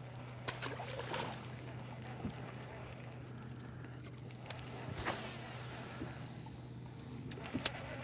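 Steady low hum of the bass boat's electric trolling motor, with a few faint sharp clicks.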